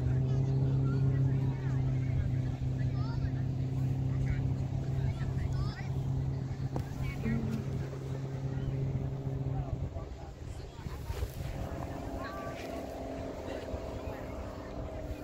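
A steady, low engine drone with a constant pitch, which drops away about ten seconds in, with faint voices of people around.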